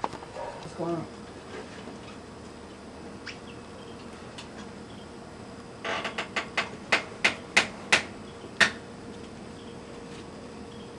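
A run of about ten sharp knocks or taps over roughly three seconds, starting about six seconds in, the last ones more widely spaced.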